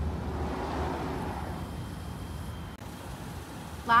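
Outdoor background noise: a steady low rumble and hiss like distant traffic, with a brief dropout about three-quarters of the way in.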